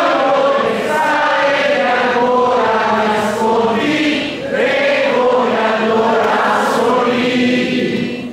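Many voices singing a melody together, choir-like, with little of the band's low end under them.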